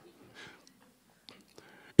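A pause in amplified speech: quiet room tone with a faint breath-like hiss about half a second in and a few faint ticks, then a man's voice over a microphone comes back in at the very end.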